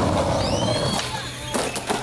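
Skateboard wheels and trucks rumbling along a concrete ledge. The rumble drops off about halfway through, followed by a few sharp clattering knocks near the end as the skater and board come down.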